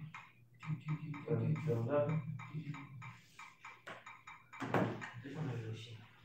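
Indistinct speech: voices talking in short broken phrases that are not clearly worded, with a brief breathy noise about three-quarters of the way in.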